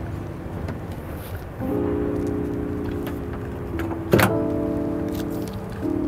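Background music of sustained, held chords that come in about one and a half seconds in, with a single sharp click a little past four seconds.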